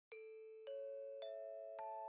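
A four-note rising chime jingle: bell-like notes struck about half a second apart, each left ringing so that they overlap.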